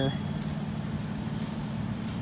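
Steady low engine drone of vehicles running, over outdoor background noise.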